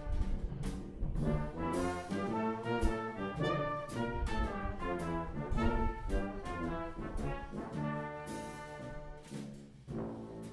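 Live brass band playing an instrumental tune: two trumpets carry the melody over tubas, with a drum kit keeping the beat and cymbals crashing.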